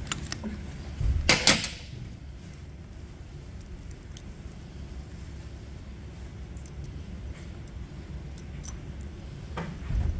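A short metallic clatter a little over a second in, from a hand tool and pump parts on a steel workbench while the charge pump of a hydraulic pump is being taken apart. Then a low steady hum with a few faint light clicks of parts being handled.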